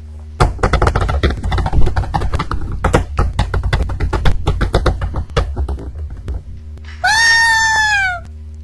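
A rapid clatter of many sharp cracks and hits for about six seconds. Near the end comes a short high cry that falls in pitch. A steady low hum sits under it all.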